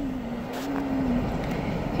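Steady engine and road noise inside a car's cabin, with a held, steady tone for about the first second.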